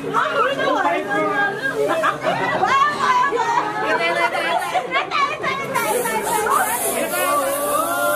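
Several people talking and shouting excitedly over one another. From about six seconds in, a steady high hiss of aerosol snow spray being sprayed joins the voices.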